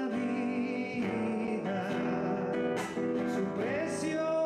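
A man singing a song while strumming an acoustic guitar.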